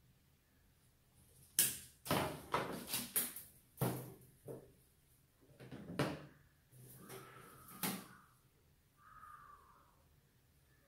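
A run of sharp clicks and knocks, about a dozen irregular strokes over several seconds, from hands working the wire and branches of a bonsai, then quieter handling.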